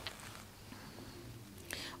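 A short pause in speech: quiet room tone with faint mouth and breath noise, and an intake of breath near the end just before talking resumes.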